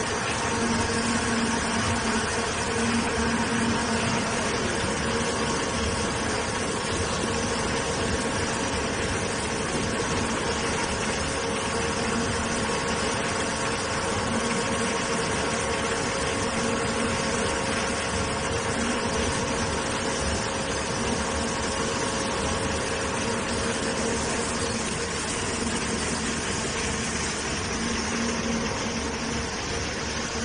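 Three-roll soap refining mill running: a continuous, even mechanical drone with a steady low hum from its motor and roller drive.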